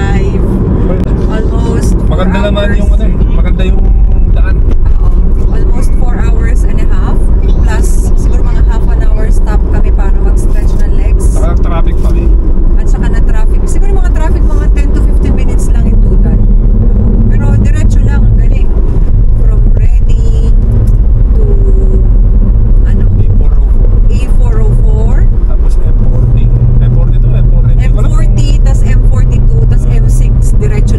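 Car driving at road speed, heard from inside the cabin: a steady low rumble of tyres and engine, with people talking indistinctly over it.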